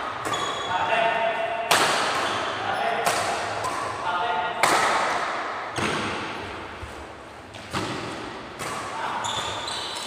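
Badminton rally: rackets striking the shuttlecock in six sharp cracks, one every one to two seconds, each echoing in a large hall.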